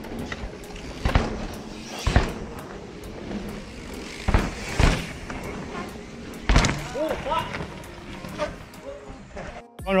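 Mountain bike tyres rolling over a dirt trail, with several sharp thuds as riders land jumps, under background music with a steady beat.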